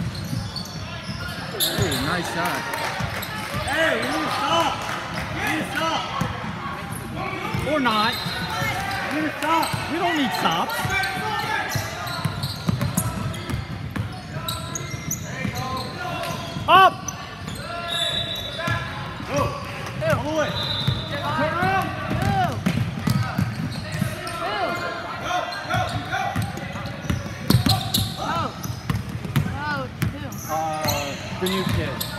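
Basketball bouncing on a hardwood court amid overlapping shouts and chatter from players and spectators, with one brief, loud, high-pitched sound about halfway through.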